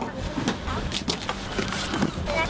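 Bags and luggage being shifted and packed by hand into a full car boot: rustling fabric and a run of soft knocks, over a steady low hum.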